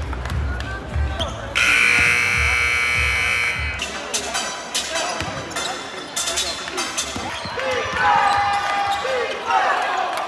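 An arena buzzer sounds one long, loud blast of about two seconds, beginning about a second and a half in, over background music that stops soon after. Then a basketball bounces on a hardwood court, with sneakers squeaking as players move.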